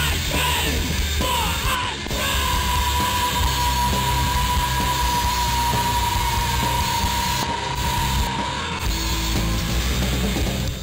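Loud, distorted heavy rock music with yelled vocals. A single high note is held for several seconds through the middle.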